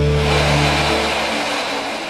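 A theme-music chord fades out during the first second, giving way to a steady rushing noise of jet aircraft engines.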